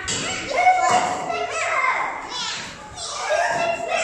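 Young children's high voices, vocalizing without clear words.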